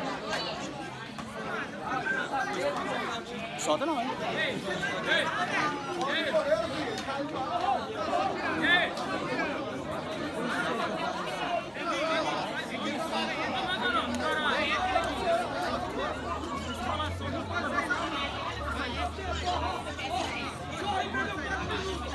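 Several people talking over one another in loose, overlapping chatter, with voices calling out now and then.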